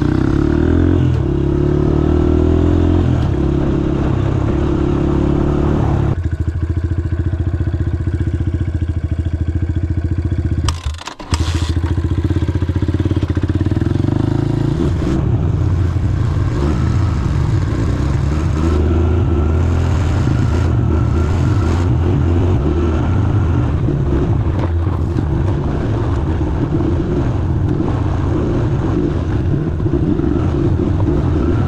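Honda CRF150F's single-cylinder four-stroke engine running as the bike is ridden along a gravel track, the revs rising and falling with the throttle. There is a brief break in the sound about eleven seconds in.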